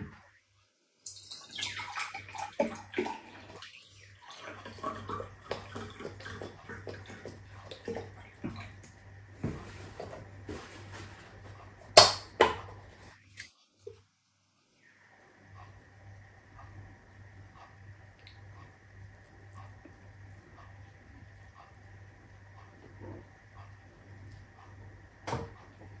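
A drink poured from a carton into a glass, with small knocks of handling at the table. A single sharp click about twelve seconds in, then a faint steady hum.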